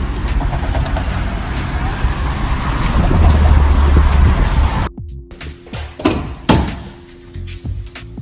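Wind buffeting a phone's microphone over outdoor noise, loudest about three to five seconds in. After a sudden cut it gives way to a quieter room with a steady hum and a few sharp knocks.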